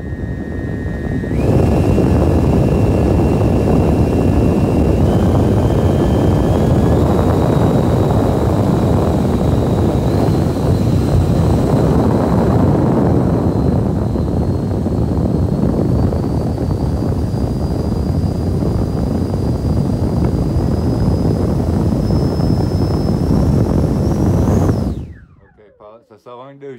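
Electric ducted fan of a Freewing F-35 RC jet run up on the bench: a loud rushing blast with a whine that steps up in pitch as the throttle is raised, then cuts off about a second before the end.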